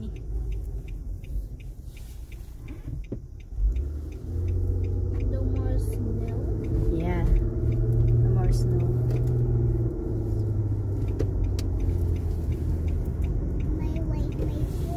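Car driving, heard from inside the cabin: a low engine and road rumble that grows louder about four seconds in as the car pulls away and picks up speed. A light, regular ticking runs through the first several seconds, and faint voices come in near the middle.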